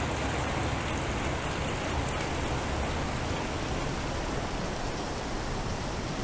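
A steady, even rain-like hiss: the electronic water texture played by a sound sculpture.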